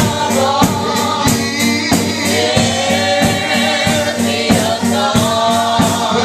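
Live gospel group singing, a male lead with women's voices, backed by a drum kit keeping a steady beat of about three hits a second.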